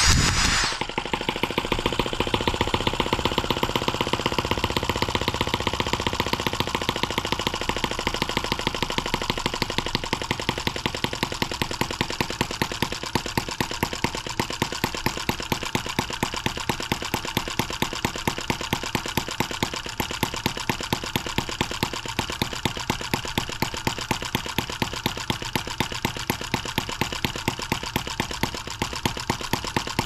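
Small brass single-cylinder model engine (an M17B) fitted with a nitro RC carburetor, spun by an electric drill on the flywheel and catching right at the start, then running steadily with rapid exhaust firing and regularly spaced sharper pops. It runs on the oversized carburetor while its mixture needle is being tuned.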